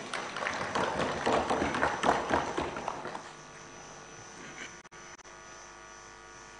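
Legislators applauding in the assembly hall right after an oath of office, fading out about three seconds in. A faint steady electrical hum follows.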